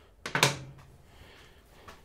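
A short burst of hard plastic clicks and rattles about a quarter second in, as a wiring connector is worked loose from its plastic mount beside a Harley-Davidson Softail's battery. A brief low vocal sound overlaps it.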